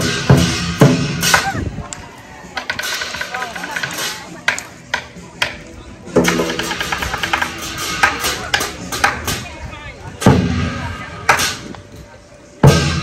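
Lion-dance percussion of drum, cymbals and gong playing spaced-out single strikes that ring on between them, with a cluster of strikes near the start and more about ten seconds in. Voices can be heard faintly under the playing.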